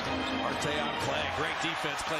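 NBA game broadcast sound playing quietly: a TV commentator talking, with a basketball bouncing on the hardwood court.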